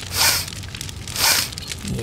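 Two sniffs about a second apart, a person sniffing the air.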